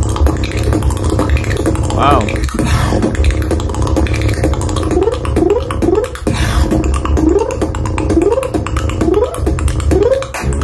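A beatboxer performing solo: a continuous deep bass line under percussive mouth sounds, with a wavering pitched vocal tone about two seconds in and a run of short rising vocal sweeps in the second half.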